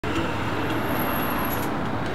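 Steady motor-vehicle noise with a low rumble, plus a thin high whine for about a second midway.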